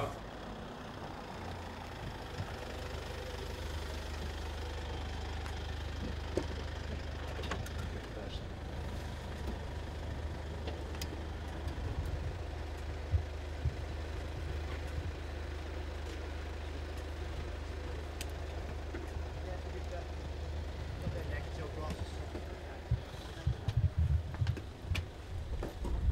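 Mercedes-Benz V-Class van idling with a steady low hum, with a few scattered clicks over it. Uneven low rumbling comes near the end.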